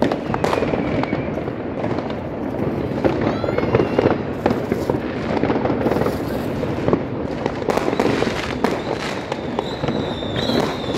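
Fireworks and firecrackers going off all around: a continuous rumble of many bangs, near and far, with crackling, and a few whistling rockets rising through it, one about three seconds in.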